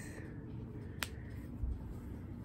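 A single sharp click about halfway through, followed by a soft low thump, over quiet room tone.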